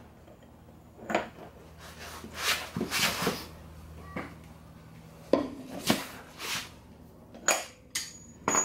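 A socket and long breaker bar clinking and clanking against the front wheel hub as the axle nut is worked loose, with about seven separate sharp metallic strikes.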